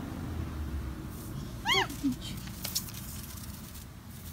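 A toddler's brief high-pitched squeal, rising and falling in pitch, about halfway through, over a faint steady hiss.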